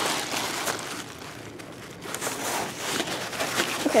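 Fabric rustling and scraping as the cloth canopy and cover of an Evenflo infant car seat are handled, in irregular soft scrapes that ease off for a moment partway through.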